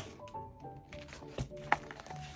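Soft background music with a simple melody. Two short, sharp knocks about a second and a half in, from a black binder being handled on a tabletop.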